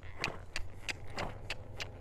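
A ridden Friesian horse walking, its tack and hooves giving an irregular run of light clicks, about four or five a second, over a low steady rumble.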